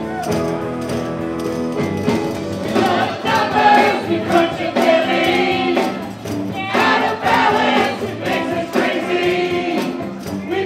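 Live rock band playing under a group of voices singing together, with tambourines shaken in time.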